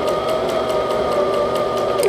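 Brother MZ53 sewing machine running at a steady speed, sewing forward: a steady motor whine with the needle ticking about seven stitches a second. The sound cuts off at the end.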